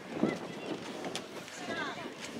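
Distant shouting voices of people calling out during a youth soccer match in open play. A short sharp click comes a little past the middle.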